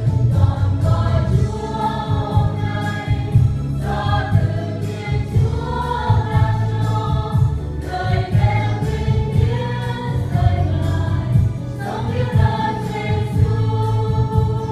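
Mixed choir of men and women singing a Vietnamese gospel song of thanksgiving, over instrumental accompaniment with a bass line and a steady beat.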